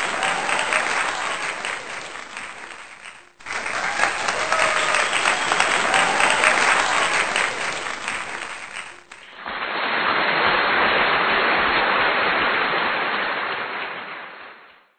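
Audience applause in three spliced stretches: the first fades and cuts off about three seconds in, the second runs until about nine seconds in, and a duller third stretch carries on until near the end.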